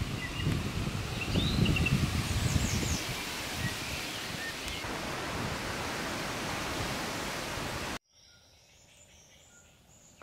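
Wind buffeting the microphone in irregular gusts over a steady rushing noise, with a few bird chirps in the first couple of seconds. About eight seconds in, the noise cuts off suddenly, leaving a much quieter background with faint birdsong.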